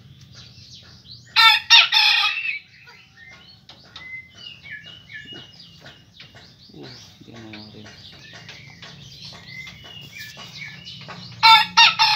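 A rooster gives two short, loud calls, one about a second and a half in and one near the end, with soft high chirping between them.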